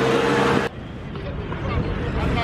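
Loud outdoor street noise with voices and a steady tone, cut off abruptly less than a second in. Quieter ambience of an open city square with faint scattered voices follows.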